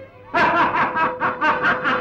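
A man laughing in a quick run of about eight 'ha' pulses, roughly five a second, starting about a third of a second in, over a single held note of background music.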